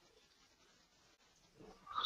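Near silence: room tone, with a faint short sound near the end.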